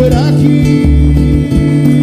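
Live samba band playing an instrumental passage, with plucked guitar chords over a steady bass line and a short sung note right at the start.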